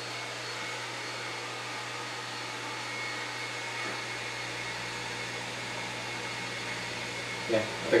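Steady whir of running electric motors, with a constant low mains hum under it.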